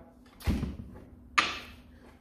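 Two knocks about a second apart as an old tyre is shifted and pressed down onto a dartboard surround on a workbench, the first a heavier thump, the second sharper.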